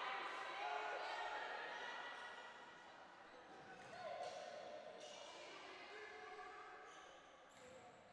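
A basketball bounced on a hardwood gym floor at the free-throw line, over faint voices of players and spectators.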